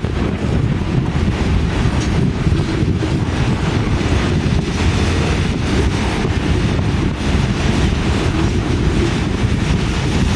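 Freight train's hopper cars rolling past close by: a steady, loud rumble and rattle of steel wheels on the rails.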